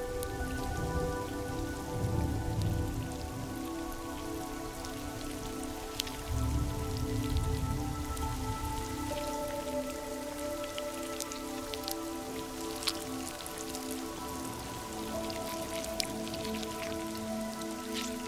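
Rain falling, with many scattered drop impacts, under a soft musical score of sustained held notes that shift in pitch a couple of times. Low rumbles swell about two seconds and six seconds in.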